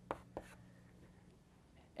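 Chalk writing on a blackboard: two short strokes in the first half second, then quiet room tone with a faint low hum.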